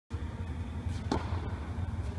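A tennis racket strikes a ball once, a sharp pop about a second in with a short echo off the hall, over a steady low hum.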